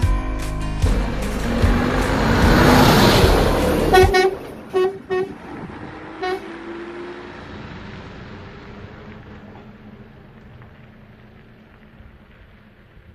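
Background music ends about four seconds in. Then a Concorde motorhome's horn gives several short toots as it pulls away, and its engine sound fades into the distance.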